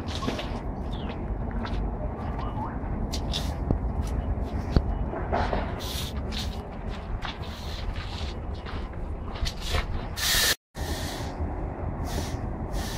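Steady low background rumble of a zoo viewing area with faint indistinct voices, broken by short hissing rustles and a couple of sharp clicks. The sound cuts out completely for a split second about ten and a half seconds in.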